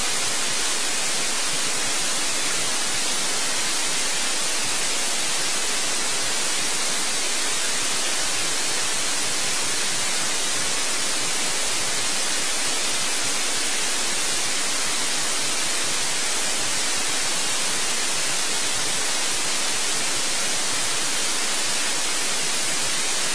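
Steady, loud hiss of static or white noise, even and unchanging, weighted toward the high end.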